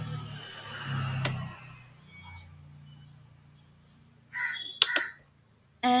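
A low, wordless murmur of a man's voice, then quiet room tone, with a couple of sharp clicks about five seconds in.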